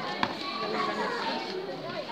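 Indistinct children's voices and chatter in a large hall, with one sharp smack of a blow landing about a quarter second in.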